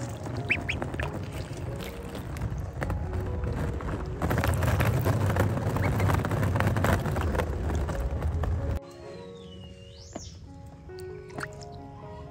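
Ducklings peeping over background music, with a steady rush of water from a garden hose pouring into a tarp pool that cuts off suddenly about nine seconds in.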